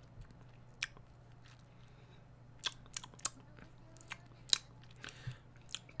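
Quiet room tone with a low steady hum, broken by about six faint, sharp clicks scattered through it, a cluster of three near the middle.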